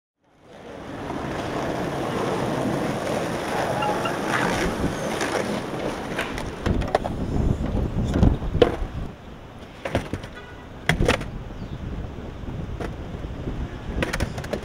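Outdoor ambience with wind on the microphone, fading in, then a string of sharp wooden knocks and clacks from skateboards being handled in a car trunk.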